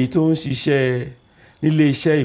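A man talking, with crickets chirping steadily in the background.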